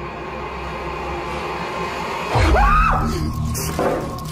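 Over a low, steady music drone, a sudden deep thud about two and a half seconds in is joined by a high scream that rises and then falls: a crew member's frightened reaction to the figure in the cellar.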